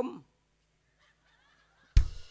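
A nang talung puppeteer's exclamation in a character's voice, rising and falling sharply in pitch, ends just after the start. After about a second and a half of near quiet, one sharp drum-and-cymbal hit from the accompanying band lands at the very end.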